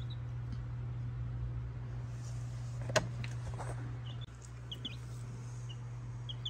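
A few faint, short peeps from baby chicks over a steady low hum, with a single sharp click about halfway through.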